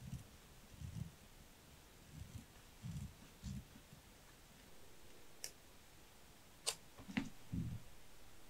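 Faint handling of a paper sticker strip and small craft tools on a desk: soft low bumps through the first few seconds, then three sharp clicks and two more bumps in the last few seconds.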